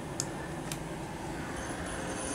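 DC servo motor and its flywheel shaft held at very high proportional gain, giving a faint steady hum with two small clicks in the first second. A faint high whine comes in a little over halfway, as the loop starts to oscillate at a higher frequency.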